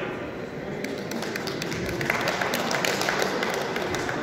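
A few people clapping by hand: scattered at first, then filling in and getting louder about two seconds in.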